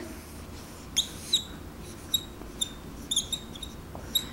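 Dry-erase marker squeaking on a whiteboard as strokes are drawn. A short scrape comes about a second in, then several brief high squeaks with the following strokes.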